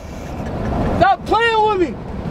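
Low steady rumble inside a car's cabin, with a person's voice calling out: a short high call about a second in, then a longer drawn-out call that rises and falls in pitch.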